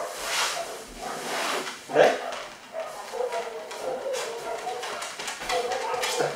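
A dog making short, soft vocal sounds while being petted and handled.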